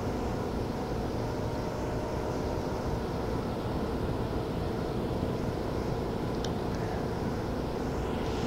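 Steady hiss and low hum of a small audio cassette recording's background noise, with two faint ticks about six and a half seconds in.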